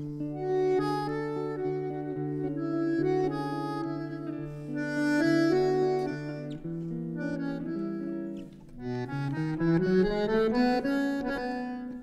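Bandoneon and guitar playing a tango instrumental: the bandoneon holds sustained chords over the guitar, then a rising run of notes climbs after a brief dip in volume near the end.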